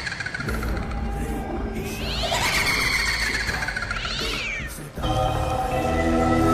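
Horror sound effects: a low droning rumble with two wavering, cat-like yowls that rise and fall, then a sustained eerie music chord cutting in at about five seconds.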